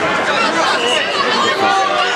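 Crowd chatter: many voices talking over each other at once in a large hall, with no single voice standing out.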